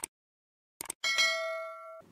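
Mouse-click sound effects, then a bell ding about a second in that rings on with several tones and fades slowly: the subscribe-button click and notification-bell sound effect of a channel intro animation.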